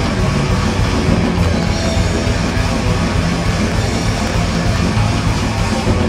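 A heavy metal band playing live, an instrumental stretch without vocals: electric guitar, bass guitar and drum kit, loud and continuous.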